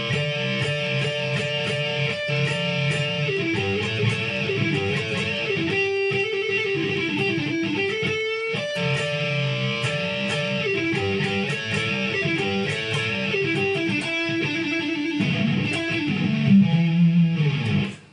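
Electric guitar with some gain playing a run of double stops and double-stop bends in the E minor pentatonic and blues position at the twelfth fret: two notes sounded together, one string bent up while the other holds. The held notes step up and down in pitch, with a brief break about halfway through.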